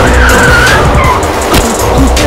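A car's tyres screeching under hard braking, with dramatic film score music over it.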